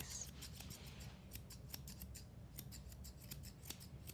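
Eight-and-a-half-inch straight grooming shears snipping through a Goldendoodle's thick curly coat: a rapid run of faint, crisp snips, several a second, broken by a couple of short pauses.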